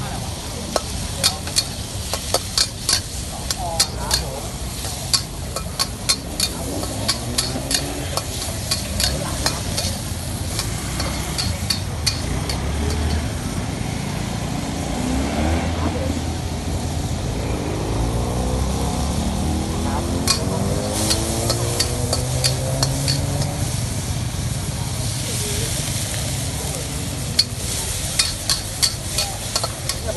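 A metal spatula scraping and clacking quickly against a wok as rice sizzles over a gas flame. In the middle stretch the clacks thin out and a motor scooter's engine passes, its pitch rising and falling.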